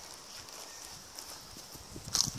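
Faint footsteps on a pavement, irregular soft steps over a steady outdoor background hiss.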